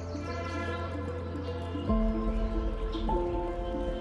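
Background music of sustained chords over a held bass note, the harmony changing about two seconds in and again about three seconds in.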